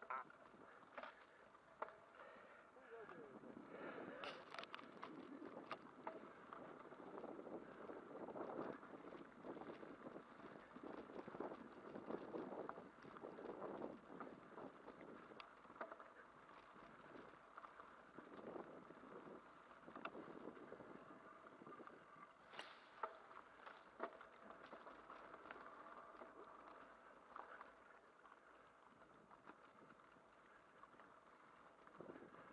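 Faint rolling and rattling of a bicycle ridden over a bumpy dirt track. There are occasional sharp clicks, the clearest about four seconds in and again past twenty seconds.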